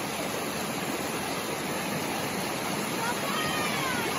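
Shallow rocky mountain stream rushing over boulders in small rapids: a steady, even rush of water.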